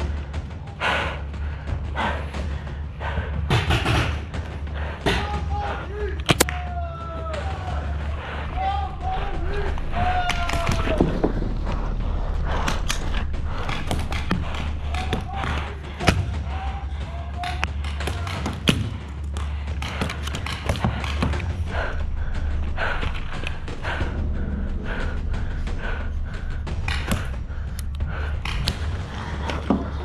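Irregular sharp pops and thuds of a paintball game over a steady low rumble, with distant shouting voices for a stretch in the middle.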